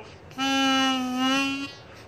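Yonberg Typhoon harmonica in A, valved with strips of bicycle inner tube, sounding a single steady blow note on hole 2, held for just over a second.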